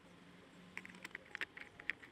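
A quick, irregular run of faint small clicks and taps begins a little way in: hands handling a car door's plastic courtesy-light lens and a screwdriver as the light is seated for screwing down.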